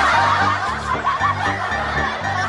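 Laughter sound effect: many people snickering and chuckling together, over background music with a steady beat.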